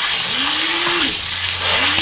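Water from a garden hose spraying steadily onto a nylon trail-running jacket worn on a man's back, a loud continuous hiss of spray on fabric. Twice, a short low hum from his voice rises and falls over it.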